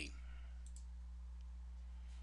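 A couple of faint computer mouse clicks, about two-thirds of a second in, over a steady low electrical hum.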